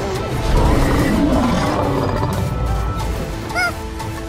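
Dramatic background music with a cartoon monster's roar in the first seconds, and a short squeaky call near the end.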